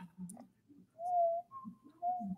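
A person whistling a few short notes: a lower note, then a higher one, then the lower note again.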